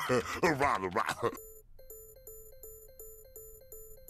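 A voice for about the first second and a half, then a faint electronic beeping: one pitched tone repeating evenly at about three beeps a second.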